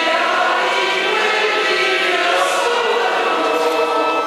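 Choir and congregation singing with organ accompaniment: the sung acclamation before the Gospel.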